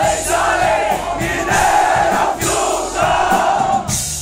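A concert crowd shouting together in long, drawn-out yells of about a second each, four in a row, answering the singer's call to be louder.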